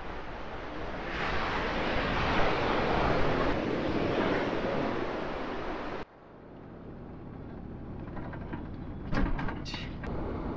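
Ocean surf washing onto a rocky beach with wind on the microphone, a steady rush. About six seconds in it cuts to the quieter, lower noise of a car driving, heard from inside the cabin, with a few knocks near the end.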